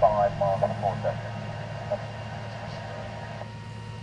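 A voice coming through a radio receiver, thin and narrow-band, ending about a second in. Radio hiss follows in the same narrow band and cuts off suddenly about three and a half seconds in. A steady low hum runs underneath.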